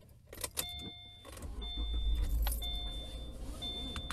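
A car's electronic warning chime sounding about once a second over the low rumble of the car, with a few clicks near the start.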